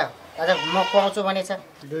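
A person's voice talking in dialogue.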